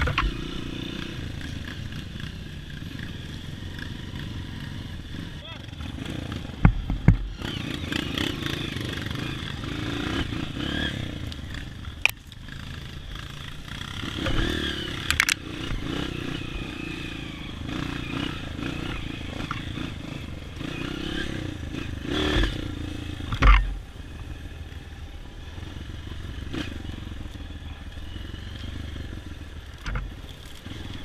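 Honda CRF230 trail bike's single-cylinder engine riding a rough trail, its pitch rising and falling as the throttle is worked. Several sharp knocks and thuds break through, the loudest about a quarter of the way in and again about three-quarters through.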